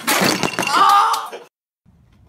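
A loud crash and clatter, like something breaking, with a short cry mixed in, cut off about a second and a half in. Faint low background noise follows.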